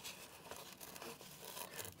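Faint rustling and light handling noises as a hand moves over and grips the fabric liner inside a motorcycle helmet.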